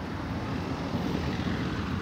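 A steady low rumble of outdoor background noise, even throughout, with no distinct events.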